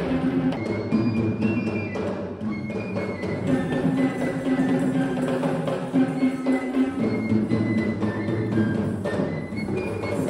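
Live Kandyan dance music: geta bera barrel drums beaten by hand, with a high melody line stepping up and down over them.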